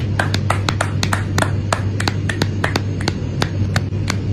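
Suspense sound effect laid over the clip: a steady low hum under rapid, sharp ticks, about six a second.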